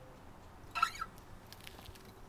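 The last acoustic guitar chord fading out, then a short squeak a little under a second in and a few faint clicks as the guitar is handled.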